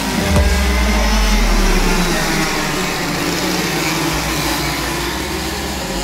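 Several racing go-kart engines running together as a pack of karts drives past on a wet track, their pitches shifting, over a steady hiss.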